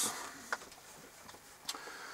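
Faint handling of a galvanized sheet-metal feeder box: two light, sharp clicks about a second apart as it is turned in the hands.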